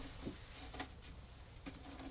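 Faint handling of a wooden tabletop as it is lowered and lined up on a Lagun swivel table leg: a few light ticks and scuffs.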